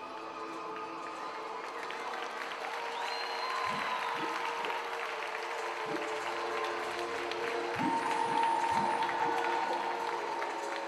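Music with long held notes, and audience applause that builds through the stretch and is loudest near the end.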